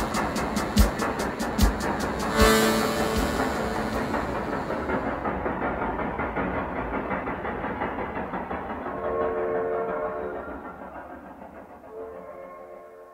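The end of a song: a few last drum hits about a second apart, then a crash that dies away into a recorded train effect, a steady rumble of rolling wheels with a horn sounding about nine seconds in, fading out.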